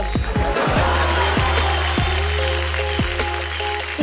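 Audience clapping over background music with a held deep bass tone and sustained notes.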